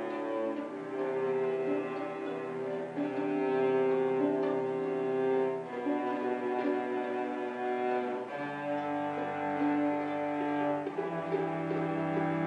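Small string ensemble of violins and cellos playing a classical piece with long held bowed notes, the harmony changing every two to three seconds.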